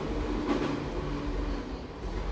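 Airport moving walkway running: a steady mechanical rumble and low hum.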